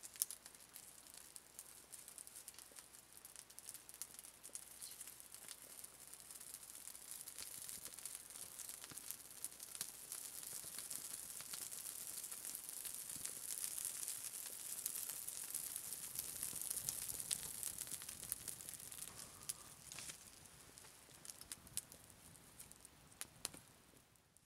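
Small campfire catching in a stone fire pit: tinder smoldering under thin kindling twigs that begin to burn, with faint scattered crackles and a hiss that builds through the middle and eases near the end.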